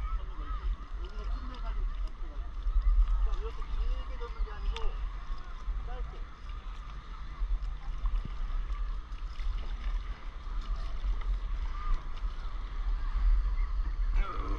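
Steady low wind rumble on the microphone over water lapping at a stand-up paddleboard, with faint, indistinct voices in the background.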